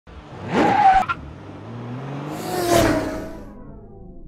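Logo sting sound effect of a car engine sweeping past twice. The first pass cuts off suddenly about a second in. The second falls in pitch as it fades away.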